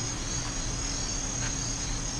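Crickets chirring steadily in a night ambience: a thin, high, unbroken trill over a faint low hum.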